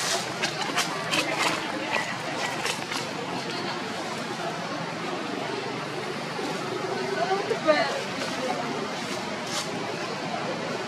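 Indistinct background voices of people talking, with scattered clicks and rustles in the first few seconds and a short rising call a little before the end.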